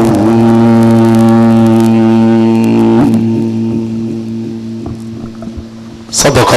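A male reciter's voice holding one long, steady note at the close of a mujawwad-style Quran recitation. The note breaks off about three seconds in and the sound fades away. A steady low hum runs underneath.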